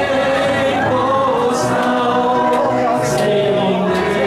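A Chinese worship song, sung with long held notes by a man at a microphone, with more voices singing along.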